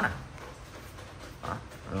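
A man speaking Vietnamese at the very start and end, with a quiet pause of nearly two seconds between, holding only faint low room hum and a brief soft sound about one and a half seconds in.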